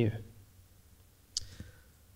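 A pause in a man's speech. His last word fades, then near silence with a single short click about two-thirds of the way through.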